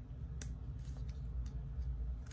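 A few light clicks and taps as the packaging of a PanPastel pastel set is handled and worked open, the clearest about half a second in, over a low steady hum.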